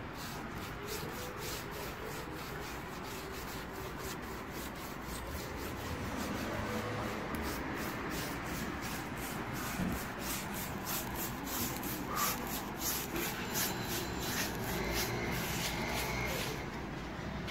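Paintbrush bristles rubbing across the wooden top of a nightstand, working in a first coat of white paint with repeated back-and-forth strokes, about three a second.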